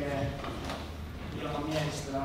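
Speech: a man reading a poem aloud from a book, in Finnish.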